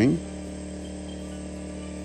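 Steady hum of a portable generator running, an even drone with no change in pitch.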